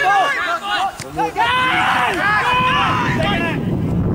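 Voices shouting on and around a football pitch during play, calls rising and falling. There is a short sharp knock about a second in, and wind rumbles on the microphone near the end.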